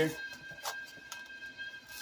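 Quiet room tone with a faint, steady high-pitched whine and a couple of soft taps about half a second and a second in.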